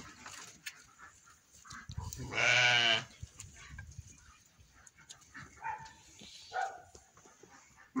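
Sheep in a crowded flock bleating: one loud, drawn-out bleat lasting about half a second a little before halfway, two fainter short calls later, and another loud bleat starting at the very end. Small scattered knocks come from the animals jostling.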